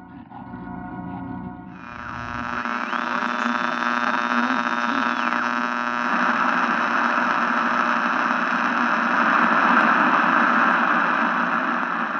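Electronic buzz and static noise from a produced intro sting: a steady many-toned hum sets in about two seconds in, a thin high tone slides up, holds and drops back, and a hiss of static swells louder from about six seconds in.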